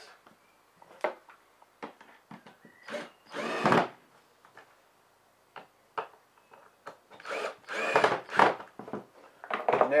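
Cordless drill driving screws into a wooden frame in short bursts, once about three and a half seconds in and several times around seven to eight and a half seconds. Small knocks and clicks of handling come between the bursts.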